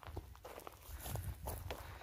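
Footsteps on dry, hard ground and fallen dry leaves: faint, irregular crunching steps with a low rumble underneath.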